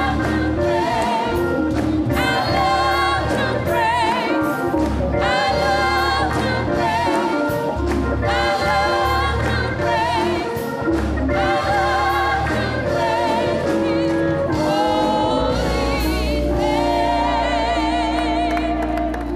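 Women's gospel choir singing with vibrato over a steady low instrumental backing.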